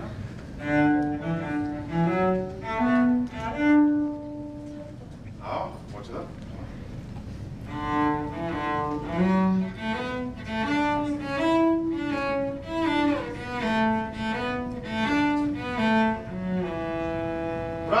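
Solo cello bowed through a melodic passage: a short phrase, a pause of about two seconds, then a longer phrase of connected notes ending on a long held note.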